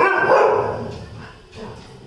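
A dog barking: one loud bark right at the start that fades over about a second, then a second, softer bark about one and a half seconds in.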